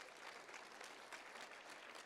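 Faint scattered applause from an audience: many small claps blending into a soft patter.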